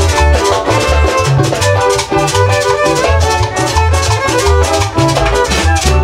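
Salvadoran chanchona band playing cumbia live: violins carry the melody over a bouncing bass line and steady percussion with a shaker, in an instrumental passage without singing.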